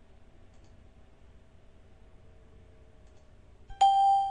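A single bell-like electronic chime, typical of a trading platform's audio alert, sounds near the end and rings out with a clear tone that fades within about a second. Before it there is only faint room hum.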